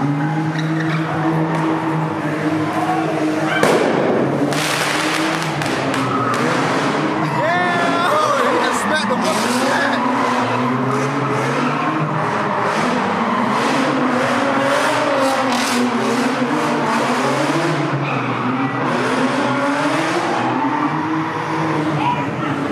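A car engine revving hard with tyres squealing and skidding, as in a burnout or donut, over people shouting. There is a sudden loud bang about four seconds in, then many sharp cracks through the middle.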